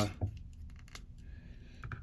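Light clicks and rubbing of small plastic action-figure parts as fingers handle a swap-in hand and fit it onto the figure's wrist peg.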